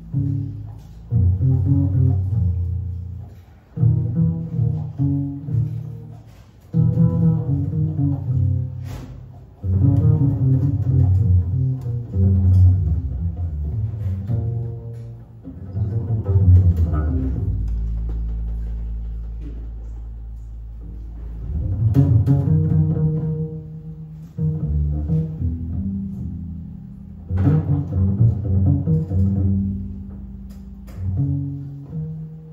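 Double bass played pizzicato in jazz phrases separated by short pauses, with one low note left ringing for several seconds around the middle.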